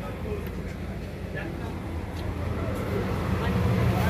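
Bus engine idling, a steady low rumble that grows louder near the end, with indistinct voices of people around it.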